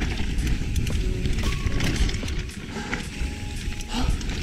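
Mountain bike riding fast down a dirt berm trail, heard from a chest-mounted camera: tyres rolling over dirt and the bike rattling in many quick clicks, over a low rumble on the microphone.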